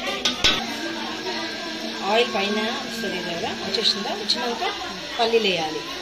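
A person's voice talking, with a single clink of a utensil against a pot about half a second in.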